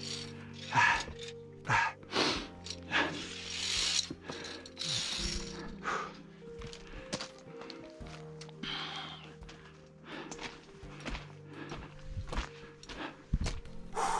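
Background music of long held notes, over irregular scuffs and knocks of hands and boots on rock and loose scree, with a few short bursts of hiss.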